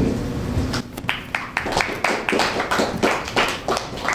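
Scattered hand-clapping from a small audience, starting about a second in as a string of separate, uneven claps rather than a dense roar.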